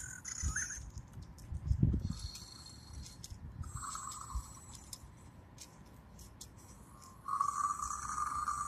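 Untamed dinosaur toy figure making faint electronic creature sounds through its small speaker, amid light clicks and knocks from its moving parts and the hand holding it. A longer call begins near the end, which the owner takes as the figure being happy.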